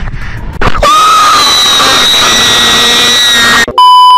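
A very loud, distorted scream held for about three seconds, starting about a second in and cutting off abruptly. Just before the end, a steady, piercing test-tone beep of about 1 kHz starts, the kind played over TV colour bars.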